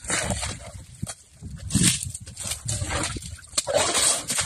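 An Asian elephant mud-bathing, scooping wet sand and mud with its trunk and flinging it over its body in irregular, noisy bursts.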